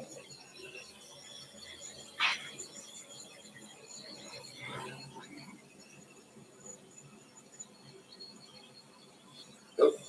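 Faint steady hiss of a handheld gas torch being passed over fresh epoxy resin to pop surface bubbles, with one short sharp sound about two seconds in.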